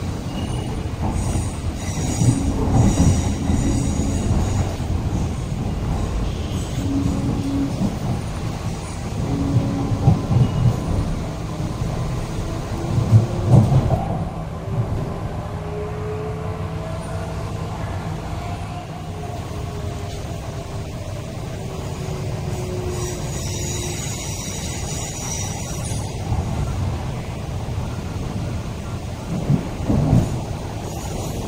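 Interior of a moving MTR East Rail Line R-train: a continuous low rumble of wheels on track, with heavier knocks a few times in the first half. A motor whine glides up and then down in pitch in the middle, and a high wheel squeal comes in the first few seconds and again near the end.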